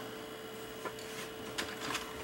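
A few faint clicks and taps from an oscilloscope probe and ground clip being handled against a VCR circuit board, over a steady faint hum.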